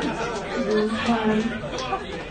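Speech: several voices talking over one another, with no clear words.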